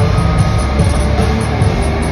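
Loud live rock band: distorted electric guitars in a dense, droning wall of noise over a low, thudding beat, heard from the audience.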